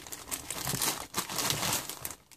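Clear plastic bag crinkling as an unpainted reborn doll kit's head and limbs are unwrapped and handled.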